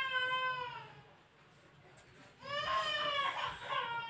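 A cat meowing: one long cry that tapers off about a second in, then after a short pause another long, drawn-out meow that rises and then holds steady.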